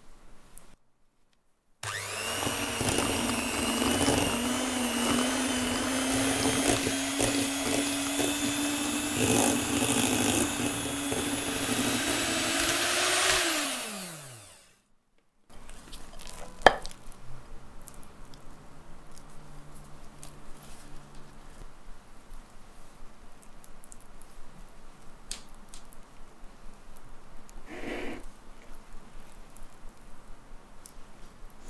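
Electric hand mixer beating cream cheese and chocolate spread in a glass bowl. It starts about two seconds in, runs steadily with a slowly rising pitch, then winds down and stops about fourteen seconds in. After that come quieter soft scraping sounds of a silicone spatula spreading the chocolate cream in a steel cake ring, with one sharp click a few seconds later.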